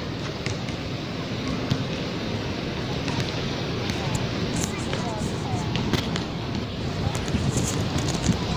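Steady outdoor background noise with faint voices in the distance and a few light clicks.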